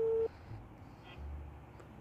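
Telephone ringback tone heard through a mobile phone's loudspeaker while the called phone rings: a steady mid-pitched beep that stops about a third of a second in, followed by faint room noise.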